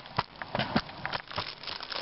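Footsteps and a dog's paws scuffing and clicking irregularly on a paved sidewalk, with some rustling.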